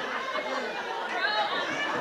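Several voices talking over one another, too jumbled to make out the words.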